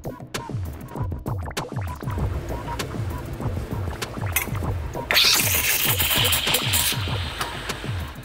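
Background music with a steady electronic beat. About five seconds in, a loud hiss of steam starts suddenly and lasts about two seconds: an espresso machine's steam wand being purged before steaming milk.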